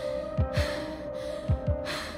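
Tense film score: a held note, with deep thuds in pairs like a heartbeat. Over it, a person gasps for breath heavily, twice.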